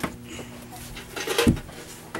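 Wooden lid being handled and fitted back onto a storage compartment: a sharp knock at the start, light wood-on-wood rubbing, and a heavier thump about a second and a half in as it drops into place.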